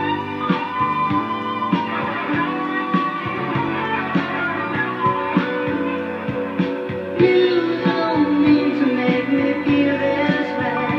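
Instrumental break of a rock song, led by electric guitar over a steady beat, with no vocals; the music grows louder about seven seconds in.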